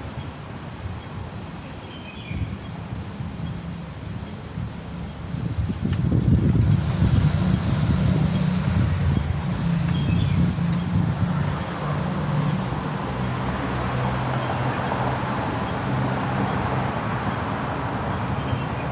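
Road traffic rumbling, with wind on the microphone; the rumble grows louder about six seconds in and stays up.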